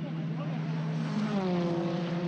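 A racing car's engine going by, its pitch falling and then holding steady over a constant low drone.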